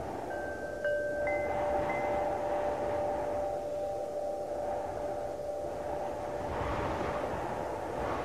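Wind blowing in gusts, with a few clear chime tones struck one after another in the first second or so and ringing on for several seconds.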